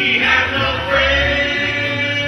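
Old-time jug-band music played live: several voices singing together over acoustic guitar, with long low notes from a washtub bass.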